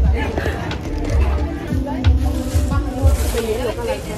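Background music with people's voices and laughter; from about halfway, a plastic bag crinkles close to the microphone.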